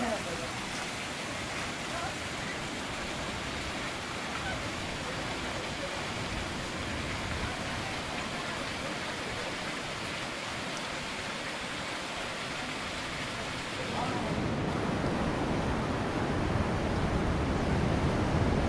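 Steady rush of a small waterfall spilling over rocks. About 14 seconds in it gives way abruptly to louder sea surf with wind on the microphone.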